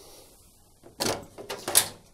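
Plastic kick plate of a Bosch washing machine being slid sideways and pulled free: a sharp knock about a second in, then a few short clicks and scrapes.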